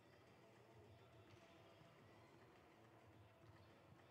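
Near silence: faint sports-hall room tone with a low steady hum.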